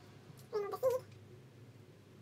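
Two brief high-pitched vocal calls, one straight after the other, a little over half a second in, against quiet room tone.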